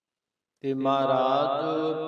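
Dead silence, then about half a second in a man's voice starts intoning in a drawn-out, melodic chant, the sung recitation of a scripture verse.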